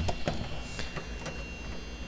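Quiet room tone: a low steady hum with a faint, thin high whine and a few soft clicks.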